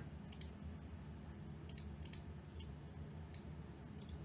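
Computer mouse clicking: about seven short clicks spread across a few seconds, some in quick pairs, over a low steady hum.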